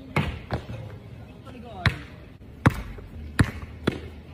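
A basketball bouncing on a hard outdoor court: about six sharp, irregularly spaced thuds.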